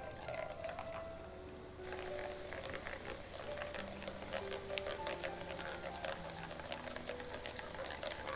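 Gram-flour batter dripping through a perforated ladle into hot oil, the drops frying into boondi with a continuous crackle of small pops. Soft background music with held notes plays underneath.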